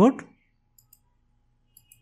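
A few faint computer mouse clicks, two quick pairs about a second apart.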